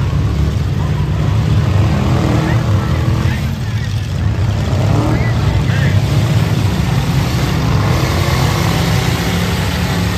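Engines of several demolition derby cars running together, a loud, steady low rumble.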